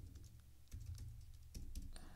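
Faint typing on a computer keyboard: a short run of scattered keystrokes over a low steady hum.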